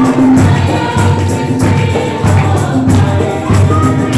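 A congregation singing a Hindi worship song together, with rhythmic hand clapping and percussion keeping a steady beat.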